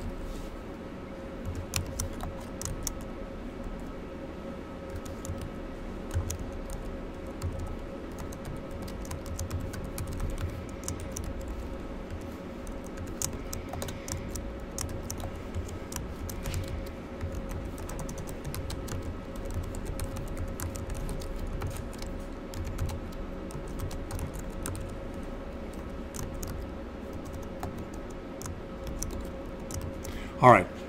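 Typing on a computer keyboard: irregular key clicks throughout, over a steady hum.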